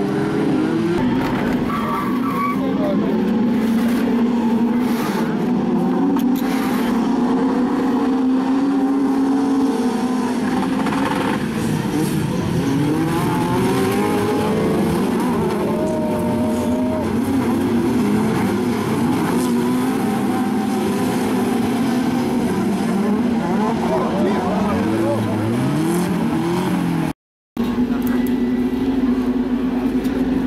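Several autocross cars' engines running and revving on a dirt track, their pitches rising and falling as they accelerate and pass. The sound cuts out for a moment near the end.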